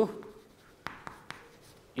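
Chalk writing on a chalkboard: a few sharp ticks of the chalk striking the board about a second in, with faint scratching between strokes.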